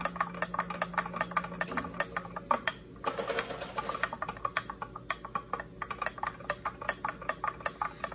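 A long thin metal spoon clinking rapidly against the inside of a glass tumbler as a powdered protein drink is stirred to dissolve it, with a brief pause about three seconds in.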